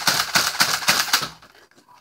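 Rapid plastic clicking from a Nerf Zombie Strike Doominator blaster being worked by hand: a quick run of about seven clicks a second that stops about one and a half seconds in.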